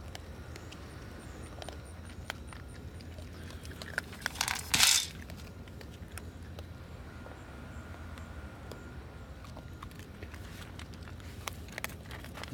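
Baby raccoon eating dry kibble off a metal baking tray: scattered small clicks and clinks of kibble and claws on the metal. A short loud rustling burst about five seconds in, over a steady low hum.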